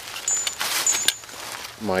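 Handling noise of climbing gear: fabric rustling with light metallic clinks from carabiners and hardware in a gloved hand, and one sharp click about a second in.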